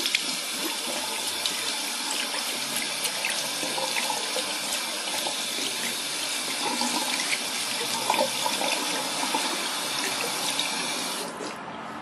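Bathroom sink tap running steadily, the water splashing over a hand and into the basin as oily make-up remover and dissolved foundation are rinsed off. The tap is shut off about a second before the end.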